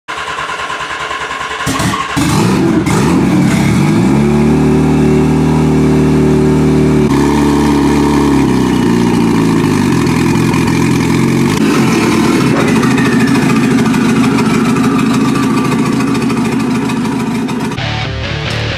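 Turbocharged Yamaha XJR1200 motorcycle engine starting up about two seconds in, then running with the revs rising and falling.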